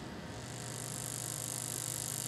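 Steady noise on a video-call line during a pause: a low hum with a high hiss that comes in about half a second in and grows slightly.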